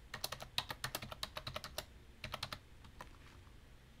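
Typing on a computer keyboard: a fast run of keystrokes lasting about a second and a half, then a short second run and one last key.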